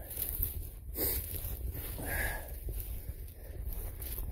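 Footsteps and rustling of brush as a person walks down a forest trail through undergrowth, over a steady low rumble on the microphone, with a brief louder rustle about a second in.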